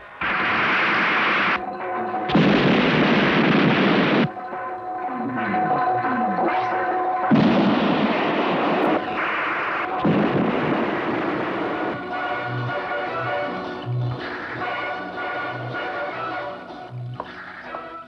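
Film soundtrack: three long explosion blasts in the first ten seconds over dramatic background music. The music then carries on with a repeated low drum beat.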